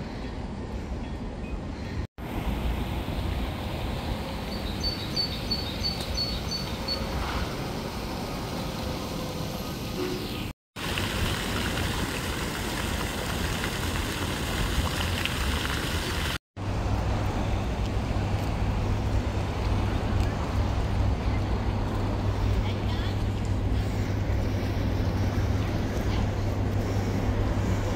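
Outdoor city street ambience over several cut-together clips: road traffic and people's voices, with a small garden fountain splashing in the middle clip.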